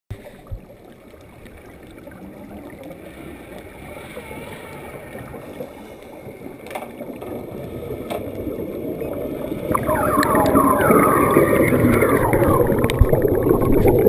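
Scuba diver's exhaled bubbles from the regulator, heard through an underwater camera housing: a faint muffled water sound that grows into loud bubbling and gurgling from about ten seconds in, as the bubbles stream past the camera.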